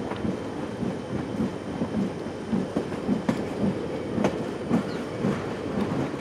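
A train running along the track, its wheels clacking repeatedly over the rails above a steady rumble.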